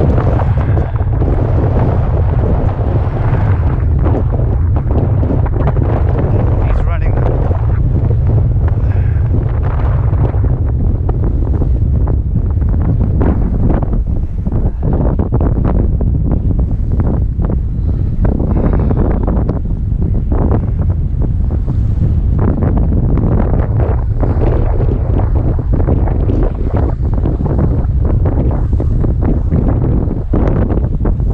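Strong wind buffeting the camera microphone with a steady low rumble, over waves washing against a rocky shore.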